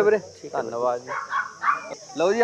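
A puppy yipping, with men's voices around it.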